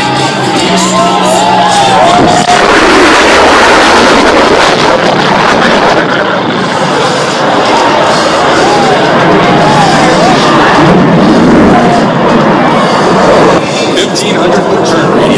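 F-35A Lightning II jet engine passing overhead at high power: a loud, steady rushing roar that comes in abruptly about two and a half seconds in and drops away shortly before the end. Music plays underneath.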